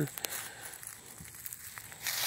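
Footsteps rustling and crackling through dry leaf litter and twigs on a forest floor, fairly quiet, with a few light clicks.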